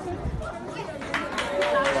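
Indistinct chatter of onlookers, with voices becoming clearer about a second in.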